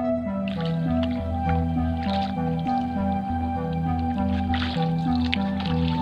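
Background music: a slow melody of held notes changing in steps. About half a second in, irregular dripping and splashing of water from kayak paddle strokes starts under it.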